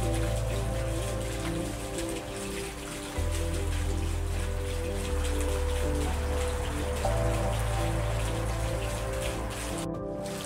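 Slow, calm background music of held bass notes and sustained chords that change every couple of seconds, with a steady patter like rain running underneath.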